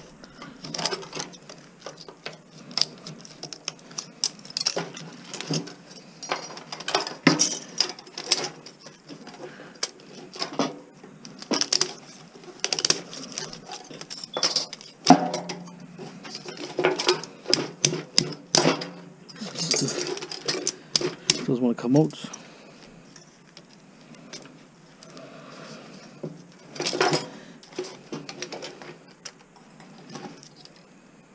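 Irregular metal clinks and scrapes as a long screwdriver pries and picks at a small range hood fan motor's steel frame, busiest through the first two-thirds and sparser near the end.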